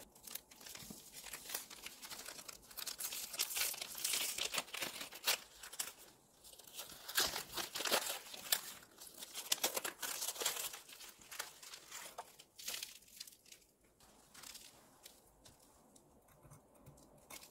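Old paper wrapper of a pressed pu'er tea brick being crinkled and torn open by hand: uneven rustling and ripping, busiest in the middle and dying down near the end.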